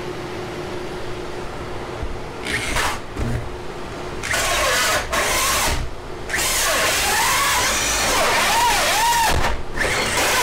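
Corded electric drill with a four-inch hole saw cutting through a door. The cutting gets loud from about four seconds in, and the motor's whine rises and falls under load, with a few brief pauses.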